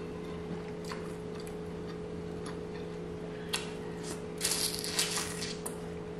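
Close-up eating and food-handling sounds from fingers working sauce-coated seafood in a bowl of sauce: a few soft clicks, then a short cluster of wet, squishy crackling about four and a half seconds in. A steady low hum runs underneath.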